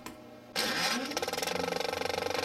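An engine-like sound effect: a faint start, then a loud engine sound about half a second in that runs on with a fast, even flutter.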